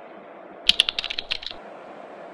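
A quick run of about eight sharp clicks, lasting under a second, over a steady low background noise.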